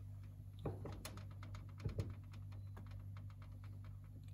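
Soft taps and small clicks of tomato slices being handled and laid onto eggplant slices on a parchment-lined baking tray. There is one louder knock early on and a pair near the middle, over a steady low hum.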